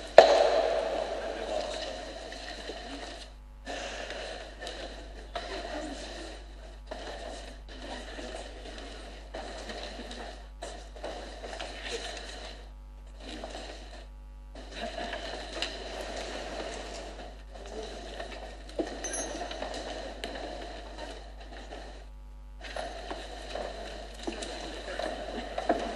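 Indistinct murmur of many voices echoing in a large church, with no clear words, cutting out briefly several times. It opens with one sharp, loud sound that rings on in the hall for a second or two.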